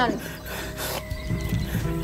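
Dramatic background music with sustained low notes, with a short hissing burst about a second in.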